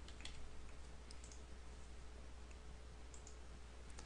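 Faint computer keyboard keystrokes and mouse clicks in a few short groups, over a low steady hum.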